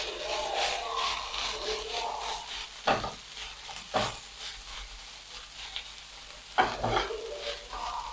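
Strips of seasoned beef with onion and green pepper sizzling in a nonstick frying pan while a silicone spatula stirs and scrapes through them. A few sharp knocks stand out, about three and four seconds in and again near seven seconds.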